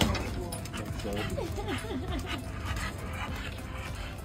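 A dog whining in a run of short, high-pitched whimpers about a second in.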